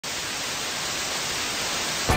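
Even, steady hiss of analogue television static, the snow of an untuned CRT set.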